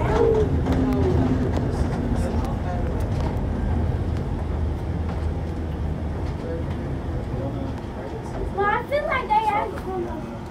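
Steady low rumble of a tram car running, growing gradually quieter, with voices briefly at the start and again near the end.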